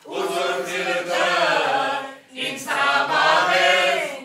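A group of voices singing an Armenian song together. The phrase breaks off for a short breath a little past the middle, then the next phrase begins.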